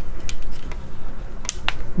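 Several light, scattered clicks and taps as multimeter test probes are moved and put down and hands handle the wired perfboard.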